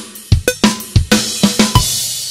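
Acoustic drum kit playing an eighth-note beat at 94 bpm on the ride cymbal bell with kick and snare. About a second in, the groove closes on a cymbal crash that rings on and slowly fades.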